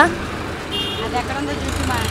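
Background of faint murmuring voices over a low, steady rumble of road traffic, with a brief high tone just under a second in.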